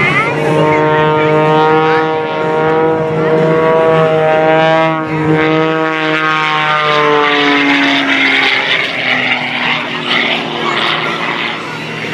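Extra 330SC aerobatic monoplane's six-cylinder Lycoming engine and propeller running at power through aerobatic manoeuvres. Its pitch rises over the first few seconds, then falls away after about seven seconds.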